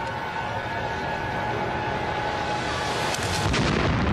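Explosion sound effect for a hand grenade going off: a low rumble that swells steadily in loudness and turns into a crackling burst near the end.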